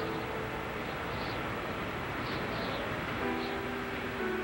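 A steady roar of storm wind under soft background music of held notes, with a new sustained chord coming in about three seconds in.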